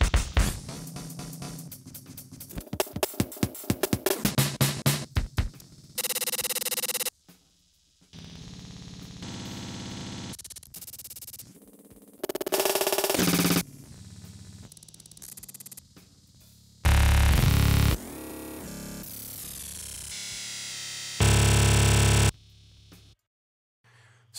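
A drum loop played through a pitch-shifting grain looper patch. For about the first five seconds it stutters in fast repeated drum fragments, then turns into held, looping grains that jump abruptly in pitch and loudness, and it stops shortly before the end. The pitch is being changed while the loop length stays the same.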